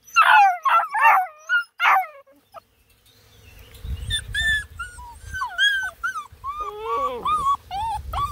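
Black and tan coonhound puppies crying out: several loud yelps falling in pitch in the first two seconds, then, after a short pause, a busy run of shorter high whines and squeaks.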